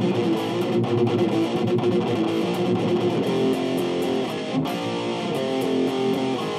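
Les Paul-style electric guitar playing a rock riff of power chords and three-string chord shapes, the chords held and changing every second or so.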